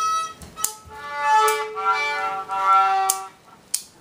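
A beginner child playing a violin, bowing a few long notes that sometimes overlap, as if two strings sound together. Near the end the playing stops briefly, with a short click.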